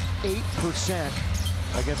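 Basketball dribbled on a hardwood court, its bounces heard over arena crowd noise and music.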